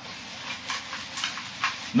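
Handheld whiteboard eraser wiping marker off a whiteboard in a series of quick rubbing strokes.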